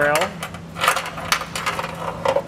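Carriage bolt and spacer block clinking against the inside of a steel vehicle frame rail as they are fed in through the access hole on a fish wire: a few sharp, separate clicks.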